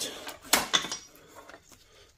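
A few light metallic clicks and clinks about half a second in, as wire leads with crimped ring terminals and an insulated clip are picked up and handled.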